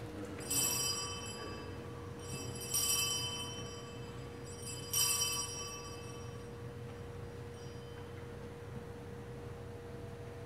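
Altar bells rung three times, about two seconds apart, each a bright metallic ring that fades away, as is done at the elevation during the consecration of the Mass.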